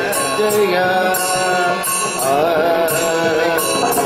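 Male voices singing a Carnatic devotional bhajan over a steady harmonium accompaniment. Small hand cymbals keep the beat with high clinks about twice a second.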